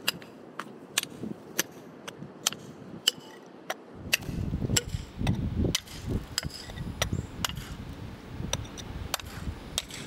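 Hand hammer striking a steel chisel driven into mudstone, about two to three sharp blows a second, cutting a trench around a fossil. A low rumble joins beneath the blows about four seconds in.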